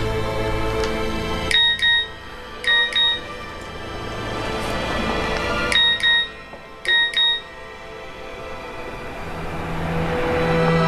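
Mobile phone text-message alert: four short double beeps, in two pairs of pairs, each beep a clear steady tone. Soft background music drops away just before the beeps and swells back near the end.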